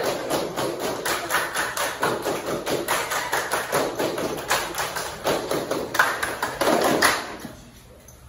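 A group clapping in a fast, steady rhythm of sharp claps, about four or five a second, with voices underneath. It stops shortly before the end.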